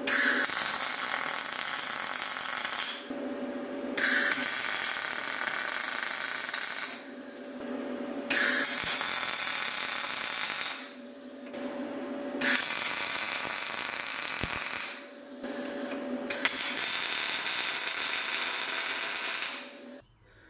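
MIG welder arc crackling as a nut is welded on with shielding gas, in five runs of about two to three seconds each with short pauses between. A faint steady hum sounds in the pauses.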